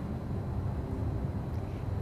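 A steady low rumble of room background noise, with no distinct event.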